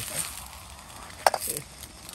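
Silicone spatula stirring instant noodles and sausages in broth in a steel wok on a portable gas stove, with a low steady background and one sharp knock a little after a second in.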